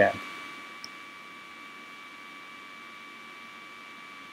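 Steady low hiss of the recording's background noise with a faint, steady high whine running through it, and one faint tick a little under a second in.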